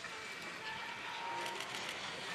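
Faint, steady outdoor ambience of a busy ski slope: an even hiss with a faint thin tone in the middle, and no voices.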